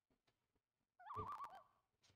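A person's brief wavering vocal sound, about half a second long, starting about a second in.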